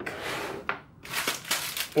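Plastic Oreo biscuit packet crinkling as it is picked up and handled, with a dense run of crackles in the second half.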